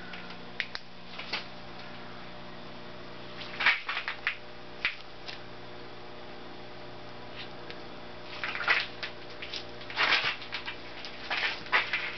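A wrench turning the nut on a wet-sleeve puller's threaded rod, giving short clusters of metal clicks and creaks as the stuck cylinder sleeve resists. There are bursts about four seconds in, near nine seconds and again near the end, over a steady low electrical hum.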